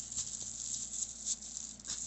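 Plastic grow bag around a mushroom substrate block crinkling and rustling as it is gripped and moved by hand.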